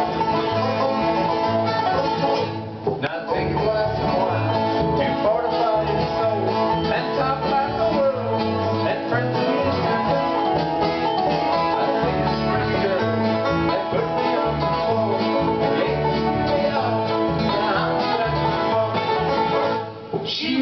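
Acoustic bluegrass band playing an instrumental passage: five-string banjo picking over two acoustic guitars and an upright bass, with no singing. The music dips briefly about two and a half seconds in.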